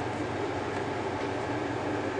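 Steady background noise, a low rumble with hiss and no distinct events.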